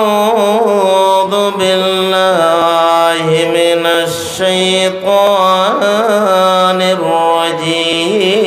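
A man's voice chanting a sermon in a long, drawn-out melody, holding notes with wavering, ornamented pitch and pausing briefly between phrases, amplified through a microphone.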